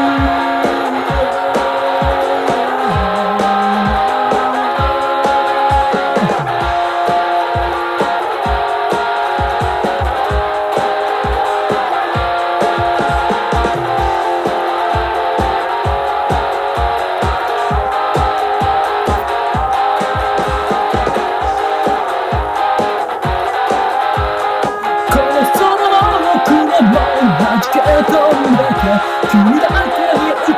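Instrumental break of a rock song demo: electric guitar and bass over a steady drum beat, with no singing. The band grows louder about 25 seconds in.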